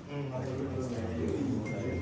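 Several people talking at once in a room: an indistinct murmur of overlapping voices. Near the end a thin, steady high tone sets in beneath the chatter.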